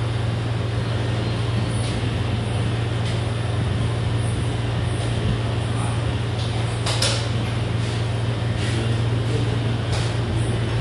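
Steady low mechanical hum with a constant noise bed, like a fan or air-conditioning unit running, with a few faint clicks and one sharp click about seven seconds in.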